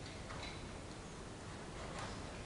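Faint, rhythmic hoofbeats of a young Canadian Warmblood mare moving on the soft sand footing of an indoor arena, over low room noise.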